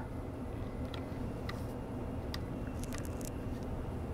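A few faint, sharp clicks of a USB cable's plug being handled and pushed into its sockets, over a steady low room hum.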